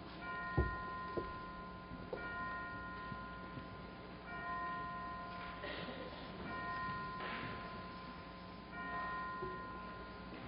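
Bell chimes struck slowly and evenly, about one stroke every two seconds, each ringing on for a second or more. There is a single short knock about half a second in.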